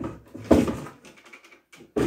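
Irregular knocks and clatter of a corded drill with a long extension bit being handled over a wooden workbench, with no motor running. The loudest knock comes about half a second in and a sharper one near the end.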